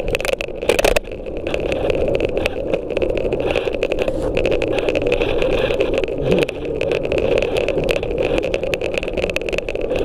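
Scooter riding over a concrete car-park floor: a steady hum of the wheels rolling, with a thin steady whine above it and frequent small clicks and rattles. A few loud knocks come in the first second.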